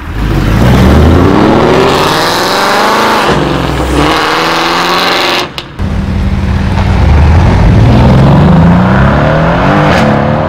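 Modified car engine accelerating hard, the pitch climbing through the revs, dropping about three seconds in, then climbing again. After a brief break a little past halfway, engine pitch rises once more in a long climb.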